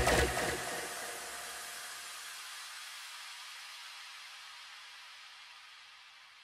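The final hit of an electronic dance track ringing out as a hissy reverb wash, with the bass dying away within a second. It fades steadily to silence over about five seconds.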